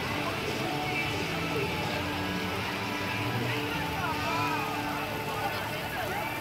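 Steady rush of churning water in a raft-ride rapids channel, mixed with people's voices and music.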